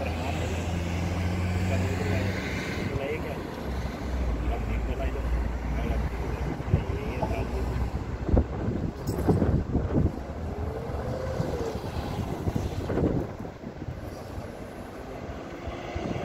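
Road traffic: vehicles driving past on a roundabout road, over a steady low engine hum, with some wind on the microphone.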